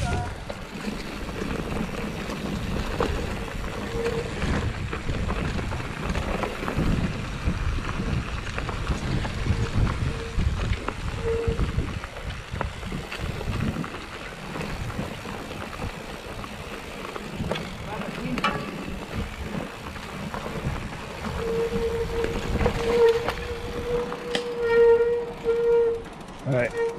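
Mountain bike riding down rough singletrack: tyres on dirt with knocks and rattles from the chain and frame over roots and rocks, and wind rumbling on the microphone. A steady buzz comes and goes, longest near the end: the rear freehub clicking while the rider coasts.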